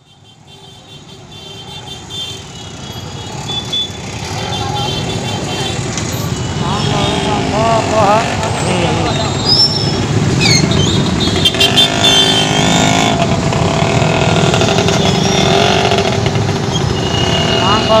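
Busy street traffic and crowd: motorcycle, scooter and auto-rickshaw engines running amid people's voices, fading in over the first few seconds.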